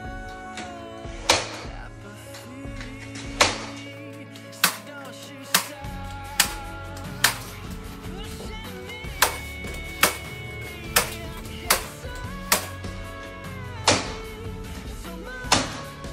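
Nail gun shooting nails into MDF panel edges, about thirteen sharp shots spaced roughly a second apart, over background music.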